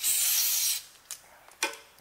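A short blast of compressed air from an air nozzle, a loud hiss that cuts off after under a second, clearing brass chips from the end mill and the work. A couple of light clicks follow.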